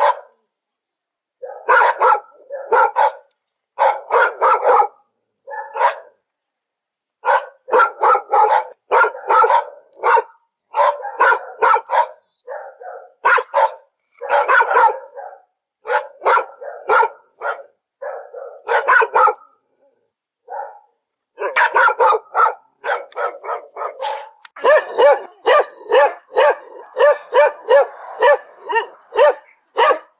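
A dog barking in short runs of several barks each, separated by brief silences. Near the end the barks come faster and steadier, about two a second.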